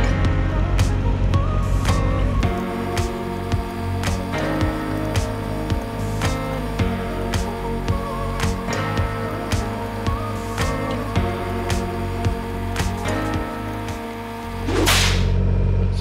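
Background music with a steady beat. About a second before the end it gives way to a swoosh, and the steady hum of a subcompact tractor's diesel engine comes back.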